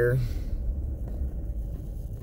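Steady low rumble of road and engine noise heard from inside a moving vehicle.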